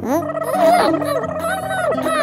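Cartoonish warbling, gibbering voice effect: quick squeaky pitch glides over a steady held tone.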